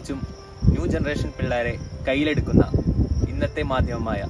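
Speech, with a faint steady high-pitched tone underneath.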